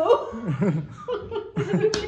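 People laughing and chuckling, with bits of talk mixed in.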